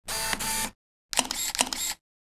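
Camera shutter sound, twice: a first burst lasting under a second, then a second one starting about a second in, with two sharp clicks in it.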